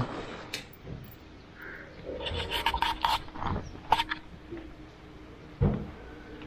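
Handling noise as a smartphone is fitted into a motorcycle handlebar phone mount: irregular clicks, scrapes and rubbing, busiest in the middle, then a single dull thump near the end.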